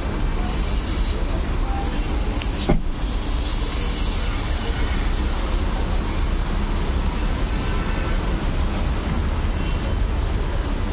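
A steady low rumble and hiss of street noise, with a single sharp knock about three seconds in, the sound of the SUV's rear door being shut.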